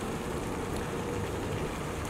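Steady background hiss of room noise with no distinct event in it.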